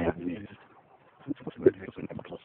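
A bird calling a few times, with a person's voice mixed in at the start.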